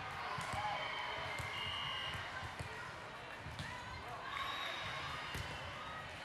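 Volleyball gym ambience: a steady hubbub of players' and spectators' voices, with scattered thuds of volleyballs bouncing and being hit, and short squeaks from sneakers on the hardwood court.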